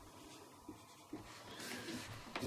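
Faint scratching of a marker pen writing on a whiteboard, with a couple of small ticks as it touches the board.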